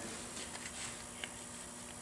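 Quiet room tone in a small shop: a faint steady hum with a single small click about a second in.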